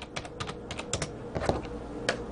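A quick, irregular run of light clicks and taps, about a dozen in two seconds, the kind made by typing on a keyboard or tapping a hard surface.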